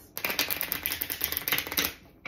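A deck of cards riffle-shuffled on a tabletop: the two halves are flicked together in a fast, dense run of card clicks that stops just before the end.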